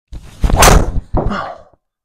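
Golf driver striking a teed-up ball into a simulator screen: a sharp, loud crack about half a second in, then a second, slightly quieter knock just over a second in.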